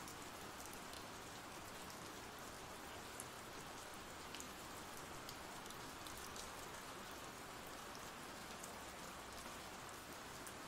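Faint, steady rain from an ambient rain sound-effect track, with a few light drop ticks.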